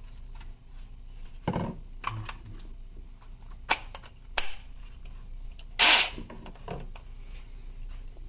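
Handling noise from a Saker mini cordless chainsaw being turned over in the hands: scattered plastic clicks and knocks, the loudest a sharp snap about six seconds in. The motor is not running.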